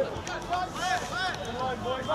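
Men's voices shouting during a rugby match: several short, arching calls, one over another.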